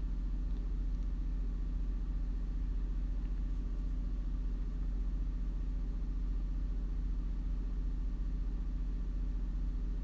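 A steady low hum, even and unbroken throughout, like a running machine or background rumble.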